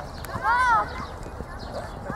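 A single shouted call from a person, its pitch rising and then falling, lasting under half a second.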